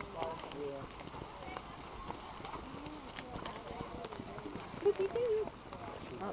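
Hoofbeats of a ridden horse passing on a dirt show-ring track, with people talking in the background.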